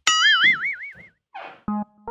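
Cartoon-style comedy sound effect: a bright tone that warbles up and down in pitch for about a second, a short whoosh, then short plucked notes of a comic music cue starting near the end.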